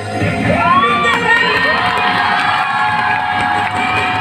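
Crowd cheering and shouting, many high voices with sliding whoops, breaking out suddenly at the start and carrying on over faint music.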